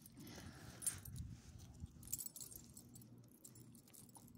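Faint jingling of small metal dog tags and leash clips, with rustling, as leashed dogs move about, strongest in the first second and again about two seconds in.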